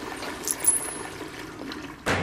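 Pull-chain toilet flushing: a sharp sound just over half a second in as the chain is pulled, then rushing water that slowly dies down.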